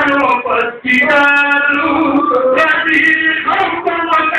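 A man singing a devotional song in long, wavering held notes, with a brief break a little under a second in.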